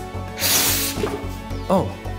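A short hiss of about half a second as rubbing-alcohol vapour in a glass jar is lit at the small hole in its lid and puffs out, over background music with a steady beat.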